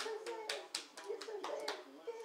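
A man clapping his hands several times in an uneven rhythm, with a voice going on underneath.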